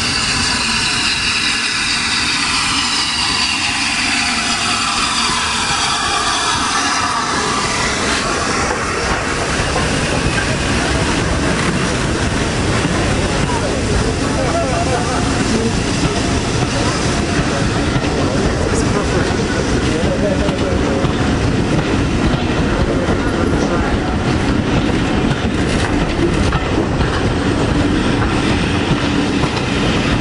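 A steam-hauled train running into the station, its coaches rolling past close by with a steady rumble and clatter of wheels over rail joints. Over the first several seconds a high, many-toned sound falls steadily in pitch as the locomotive goes past.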